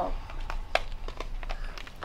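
Children's voices in a classroom with scattered short clicks and knocks from mini whiteboards and marker pens being handled and lifted up.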